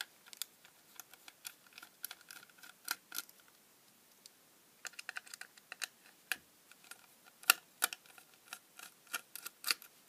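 Light taps and clicks of a small metal screwdriver tip against the parts of a circuit board and the plastic case it sits in, with the case shifting in the hands: a scattered run of sharp clicks, pausing for about a second and a half a third of the way in.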